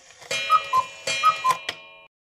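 Clock tick-tock sound effect marking time passing: four ticks alternating higher and lower, with clicks, over a steady ringing tone.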